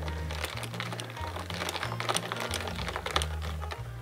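A metal straw stirring ice in iced coffee in a glass Ball mason jar: a quick, irregular run of light clinks and rattles as the ice knocks against the glass. Background music with a slow bass line plays underneath.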